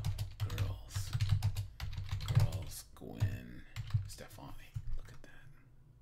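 Typing on a computer keyboard: a quick run of key clicks as a search query is entered, with a few low vocal sounds from the typist in between. The typing stops shortly before the end.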